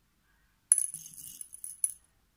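Pearl beads clinking in a small glass bowl as fingers pick through them: a sharp clink about two-thirds of a second in, a second of lighter high clinking, and another sharp clink near the end.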